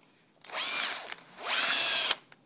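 Hammer drill with a long twist bit spun in two short trigger pulls, running free in the air: first a brief spin up and back down, then about half a second at full speed that cuts off near the end.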